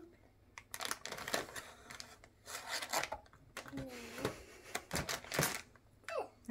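Plastic toy packaging and blister-wrapped blind-box packs rustling and crinkling as they are rummaged through in a plastic tub, in irregular crackles.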